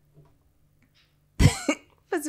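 A person coughing: two sharp coughs in quick succession about one and a half seconds in, after a near-quiet pause.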